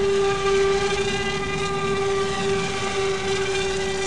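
Twin counter-rotating electric motors and propellers of an RC F-35 STOVL model, running at full throttle with the motors vectored down to hover, making a steady whine with even overtones.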